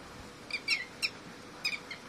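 Red-wattled lapwings calling: a few short, high chirps coming in small clusters.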